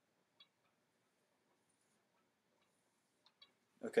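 Dry-erase marker drawing on a whiteboard: faint ticks of the marker tip on the board, one about half a second in and two more near the end.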